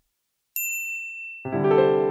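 A single high bell ding about half a second in, ringing and fading, then keyboard chords begin the show's theme music about a second and a half in.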